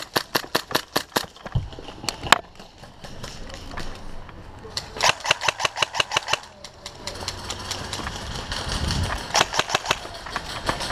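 Airsoft guns firing in quick strings of sharp cracks: a volley in the first second or so, another about five seconds in, and more near the end.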